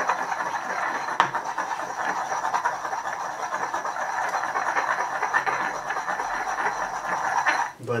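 Stone pestle worked rapidly against a stone mortar through hand sanitizer gel: a continuous fast grinding scrape of rock on rock. There is one sharper knock about a second in, and the grinding stops just before the end.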